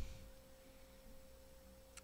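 Near silence with a faint, steady tone at one pitch.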